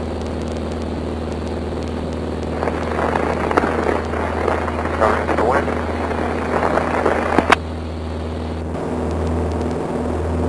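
Beechcraft Sundowner's four-cylinder engine and propeller droning steadily at full climb power just after takeoff, heard from inside the cockpit. Indistinct voices come over it from about three seconds in, and there is a sharp click near the end.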